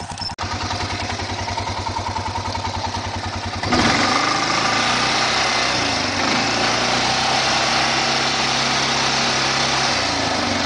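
A four-wheel ATV engine idling close by with a steady, rapid putter. About four seconds in, a loud rushing noise takes over: wind and handling noise on the camera microphone as it is carried at a run, with the engine hum still faintly underneath.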